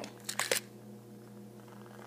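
A short scratchy rustle about half a second in as wooden matches and their cardboard matchbox are handled, then only a faint steady hum.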